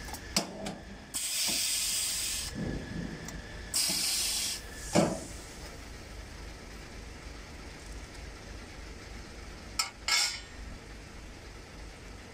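Electromagnetic sheet metal brake in use: clicks from the clamping and bending mechanism, two bursts of high hiss each about a second long, and a sharp metallic knock about five seconds in, the loudest sound. A pair of clicks with a short hiss comes near the end.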